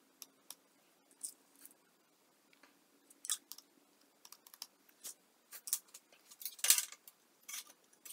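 Calculator keys being pressed: a string of soft, short clicks. Near the end come louder clacks and a scrape as metal tools are picked up off the steel table.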